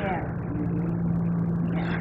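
Room tone in a pause between sentences: a steady low hum under an even background hiss.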